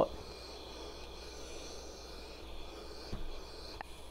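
Faint rustle of a clothes iron pressed over quilted fabric, then a soft thump about three seconds in as the iron is set down, and a small click near the end.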